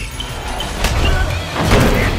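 Trailer sound design under the music: a deep low drone, a sharp hit a little under a second in, and a louder rushing swell near the end.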